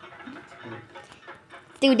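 A pause with only faint background noise. Near the end a high-pitched, effect-altered narrating voice starts speaking.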